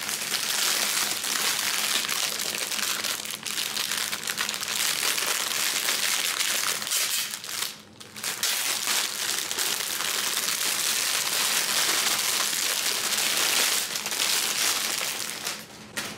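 Clear plastic wrapping on a cardboard snack box crinkling continuously as fingers squeeze and pull at it, with one short break about halfway through.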